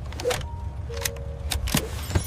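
Metal seatbelt tongue and buckle clinking and clicking several times as the belt is latched, over a low steady hum.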